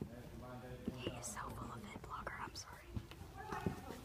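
Hushed, whispered speech, with no other clear sound.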